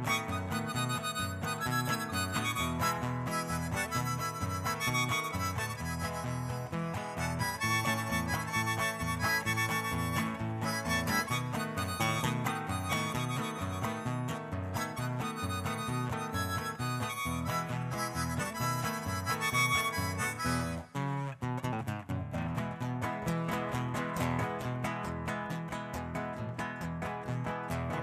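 Harmonica solo played with cupped hands over strummed acoustic guitar accompaniment, an instrumental break between sung verses of a corrido. About 21 seconds in the music briefly drops out, and the guitar strumming comes forward after it.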